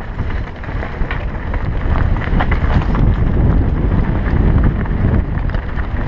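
Wind buffeting a helmet-mounted camera's microphone as a mountain bike descends a rocky dirt trail at speed, with a loud low rumble and scattered short knocks and rattles from the bike and tyres over the stones.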